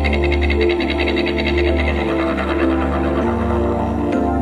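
Ambient background music built on a steady low drone, with a fast pulsing shimmer in the higher notes during the first half and a change in the low notes a little past three seconds in.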